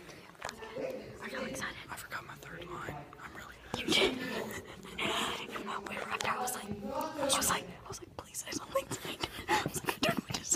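Hushed, whispered talking close to the microphone.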